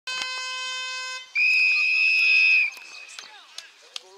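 A steady horn tone sounds for about a second, then a football umpire's whistle gives one loud, long blast of about a second and a half, the signal to start play. Faint voices follow.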